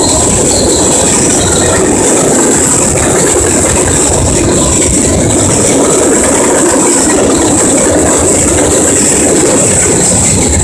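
Canadian National mixed freight train rolling past: loud, steady rumble of the cars' steel wheels on the rails.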